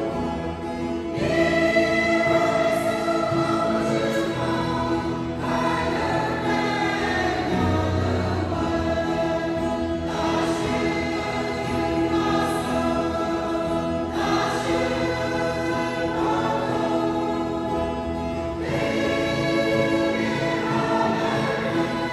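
A mixed choir of men and women singing a Christian hymn together, holding long notes that change every few seconds.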